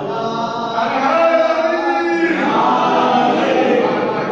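Unaccompanied male voice singing a manqabat, a devotional praise poem, in a chant-like melody of held notes that bend from syllable to syllable.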